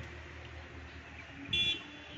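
A single short, high-pitched beep about one and a half seconds in, over a faint steady background of town noise.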